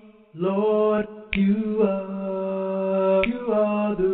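Gospel worship song: long, held sung notes, with a sharp click about every two seconds.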